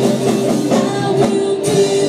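Live worship band playing a rock-style song: drum kit, electric guitar and keyboard under several singers' voices, at a loud, even level.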